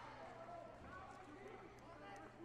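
Faint voices echoing in a large sports hall, over a steady low hum, with a couple of faint clicks near the end.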